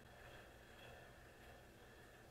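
Near silence: faint steady room tone.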